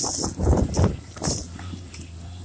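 Plastic sled towed fast over deep snow: rough scraping and rumbling, with bursts of snow spraying against the camera in the first half. It settles into a steadier low drone near the end.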